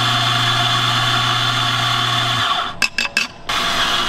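Electric espresso grinder running steadily, grinding coffee beans into a portafilter with a low motor hum and a gritty hiss. It cuts off suddenly a little over halfway through. A few sharp clicks follow near the end.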